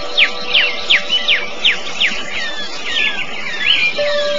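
Birdsong mixed into a soft background music track: a bird gives quick downward-slurred whistles, about three a second, that turn into twisting, warbling calls about halfway through, over faint held music tones.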